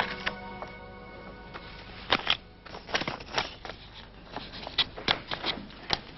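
Background music fades out right at the start. It is followed by a run of short, irregular rustles and crackles of paper and a paper envelope being handled on a desk, starting about two seconds in.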